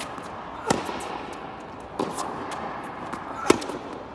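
Tennis rally: a tennis ball struck by strings, three sharp pops roughly a second and a half apart, the loudest near the end, with softer knocks between.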